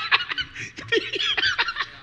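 A man laughing: a run of short, high-pitched laughs that fade out near the end.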